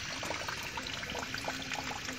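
Thin stream of water running from a spout in a stone wall and splashing onto the stone below: a steady trickle with many small splashes.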